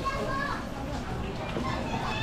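Children's and passers-by's voices chattering over general street noise.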